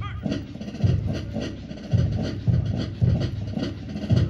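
March music with a steady bass drum beat, about two beats a second, with lighter percussive clicks between the beats.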